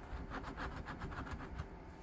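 A coin scraping the latex coating off a paper scratch-off lottery ticket in quick, evenly repeated strokes.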